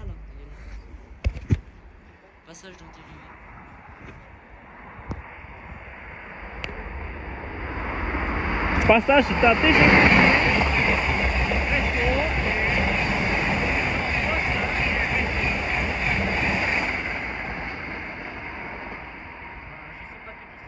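A TGV high-speed train passing straight through the station at speed: a rush of wheels on rail and air builds, is loudest for about ten seconds with a steady high whine over it, then fades as the train draws away.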